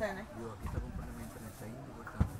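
Faint background voices: people talking at a distance, with no clear words.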